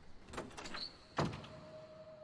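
A door heard on a TV drama's soundtrack: a few clicks and a short high squeak, then a sharp thud a little over a second in. A single steady tone follows and holds.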